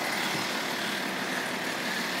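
Steady outdoor background noise in the rain: an even hiss of rain and street sound, with a vehicle running nearby.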